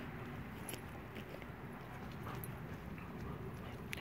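A German Shepherd nosing and chewing at an object in soft mud: a few faint clicks and scrapes over steady, quiet outdoor background noise.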